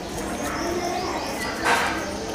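Birds calling in the background: a low coo and a few high chirps. A short burst of noise comes near the end.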